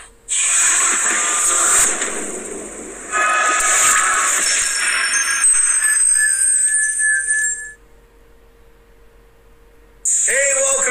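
Video intro sting: a loud hissing whoosh for about three seconds, then a short jingle of high held tones that cuts off suddenly about eight seconds in, leaving only a faint steady hum.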